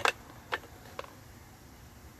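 Three short clicks about half a second apart, the first the loudest, then only low room noise.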